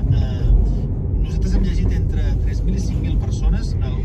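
Steady low rumble of road and engine noise heard from inside a moving car's cabin, with soft talking faintly over it.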